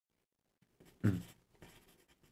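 Faint scratching of a pencil writing on paper, with a man's short "mm" hum about a second in.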